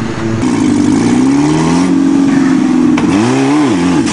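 Engine of a Volkswagen Golf rollgolf revving hard in reverse, its pitch climbing steadily, with one quick rise and drop near the end as the car tips up onto its rear roll hoops in a reverse wheelie.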